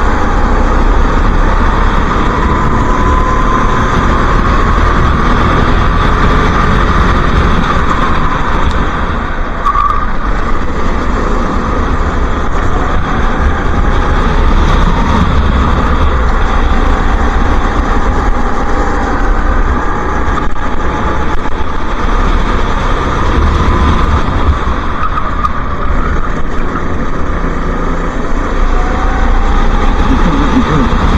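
Racing go-kart engine heard onboard at speed, its pitch rising and falling with the revs through the corners.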